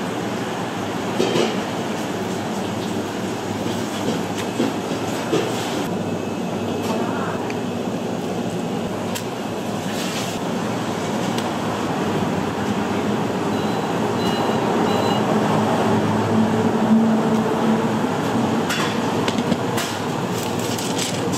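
Steady, loud rumble of background kitchen machinery, swelling a little past the middle, with a few light clicks and knocks from handling at the counter.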